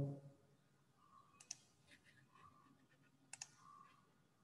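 Near silence broken by two pairs of faint, sharp clicks, about a second and a half in and again near the end: a computer mouse being clicked to advance a slideshow.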